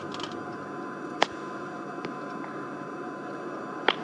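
A golf club striking a golf ball on a short chip shot, one sharp click about a second in, over steady outdoor background hiss. A second, fainter click comes near the end.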